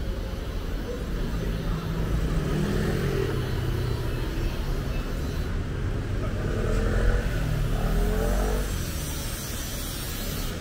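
Street traffic: motor vehicle engines passing close by, with an engine note rising as a vehicle accelerates twice, the louder one about seven seconds in.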